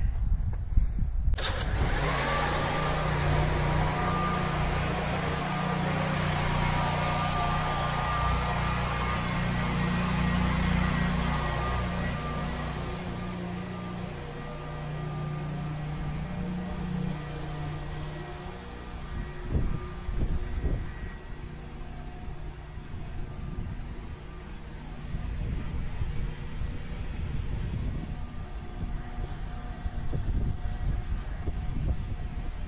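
Electric drive motor and screw-jack actuator of an aluminium crank-up tower running as it raises the tower. A steady hum with a thin whine starts about a second and a half in and grows quieter in the second half.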